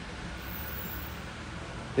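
Steady low background noise with no distinct events: room tone with a low hum.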